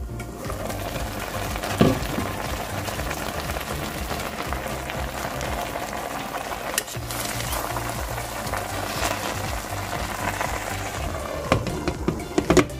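Pork belly and vegetables sizzling in their own juices in an uncovered pot as they cook without added water, with background music underneath. There is a knock about two seconds in and a few clinks near the end as the glass lid is set back on.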